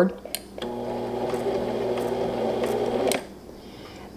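Brother MZ53 sewing machine running steadily for about two and a half seconds as it sews a few forward stitches. It starts about half a second in and stops a little after three seconds.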